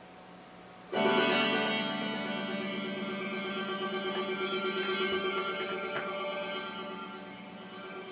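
A faint hum, then about a second in an electric guitar chord is struck and left to ring, its level wavering evenly as it slowly fades.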